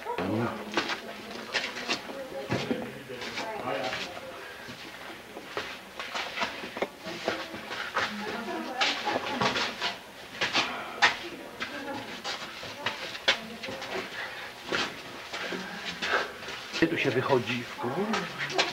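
Footsteps scuffing and knocking on rock and grit as people scramble through a narrow rock passage, with many sharp irregular clicks and knocks and muffled voices in between.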